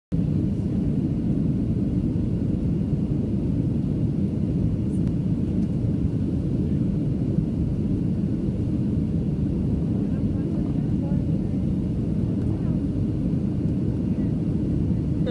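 Steady low rumble of airliner cabin noise, engine and airflow heard from inside the cabin as the plane flies in to land.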